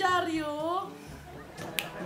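A person's voice drawn out for about a second, dipping then rising in pitch, followed near the end by a single sharp finger snap.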